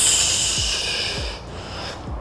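A forceful hissing exhale through the teeth while flexing, lasting about a second and a half, over background music with a deep, regular bass beat.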